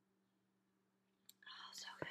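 Near silence for over a second, then a mouth click and a woman's breathy, whispered sound.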